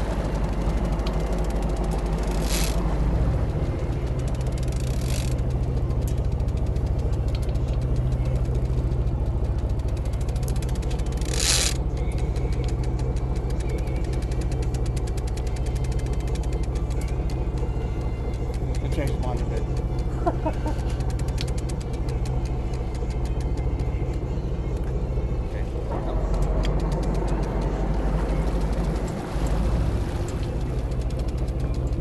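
Sportfishing boat's engine running with a steady low drone, with a few sharp knocks near the start and about a third of the way in.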